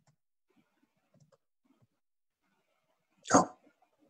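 A single short, loud bark-like animal call near the end, over faint scattered clicks.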